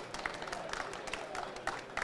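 Light, scattered applause from a small audience, with individual claps heard as irregular sharp slaps over a steady background murmur.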